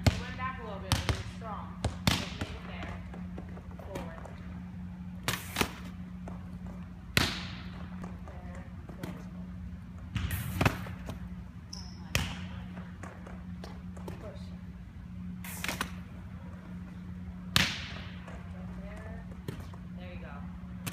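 Volleyballs being tossed, set and bouncing on a gym floor: about a dozen sharp, echoing slaps and thuds at irregular intervals, a second to several seconds apart, over a steady low hum.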